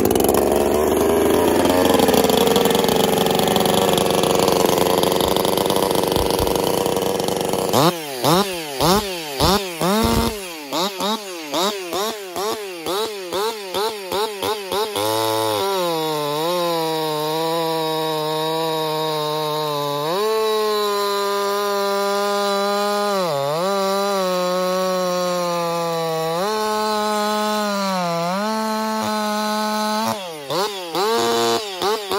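Husqvarna 346 XP two-stroke chainsaw, ported, dual-piped and tuned to about 14,000 rpm, running hard. It runs at high throttle for the first few seconds, then is blipped quickly over and over for several seconds, and from about halfway it holds a steady high whine while cutting a log, with a few short dips in pitch as the chain loads up.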